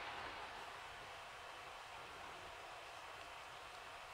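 Faint, steady background hiss of a quiet room, with no distinct sound standing out.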